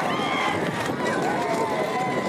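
Bullock carts galloping past on a dirt race track while a crowd of spectators shouts and whistles, with long, gliding cries over a steady outdoor noise.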